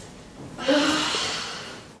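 A person sighing: one long breathy exhale that starts about half a second in and fades out.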